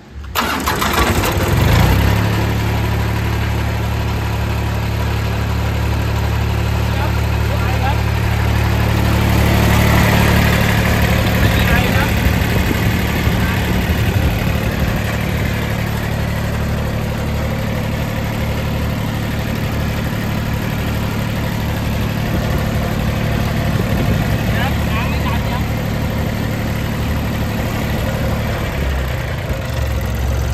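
Mitsubishi four-cylinder engine of an old Japanese air-blast orchard sprayer starting: it is cranked and catches within about two seconds, then idles steadily.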